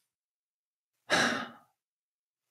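A man's single breath into a close microphone, about half a second long, a second into an otherwise silent pause.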